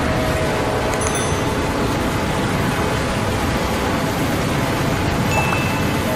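A steady, dense wash of train noise from an intro montage, with short chime-like sound effects about a second in and near the end.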